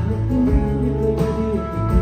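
Live Americana band playing: guitars over bass and drums, with drum strikes about every second and a half.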